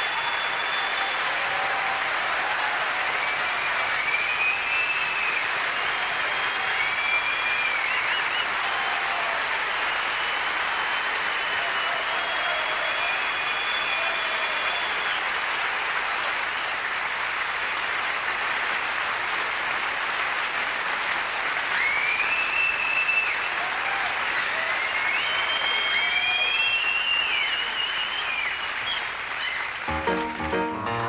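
Large audience applauding steadily, with high whistles rising out of the clapping in two clusters: a few seconds in and again after about twenty seconds.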